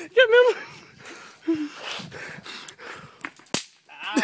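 A bang snap (pop-it) going off with one sharp, very short crack about three and a half seconds in, after a couple of fainter clicks.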